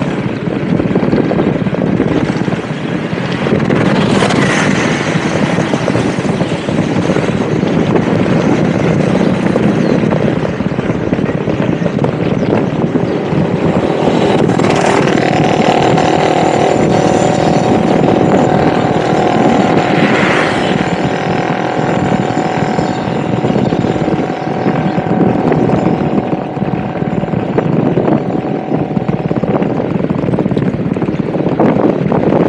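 Motorbike riding at steady speed, its engine running under constant wind and road noise; a steady tone joins from about halfway in.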